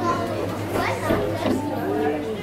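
People's voices chattering, with a young child's voice among them.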